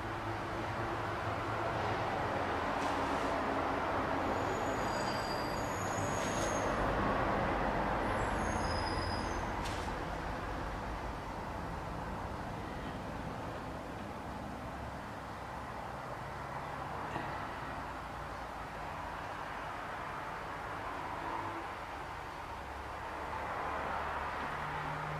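Steady rumbling background noise that builds a couple of seconds in and eases off after about nine seconds, with a few brief high-pitched chirps around four to ten seconds in.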